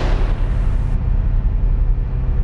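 Dramatic promo sound design: a continuous deep bass rumble, with the hissing tail of a heavy impact hit dying away over the first second.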